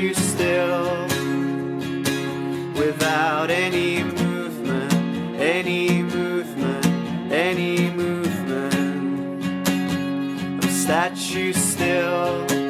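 Live band music: a strummed acoustic guitar and an electric guitar playing together, with a woman singing a melody over them, her voice wavering in vibrato a few seconds in.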